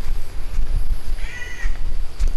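A single short animal call, about half a second long, just past the middle, heard over a steady low rumble of wind on the microphone.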